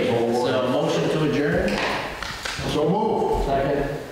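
A man speaking: continuous talk in a large hall, the words not made out.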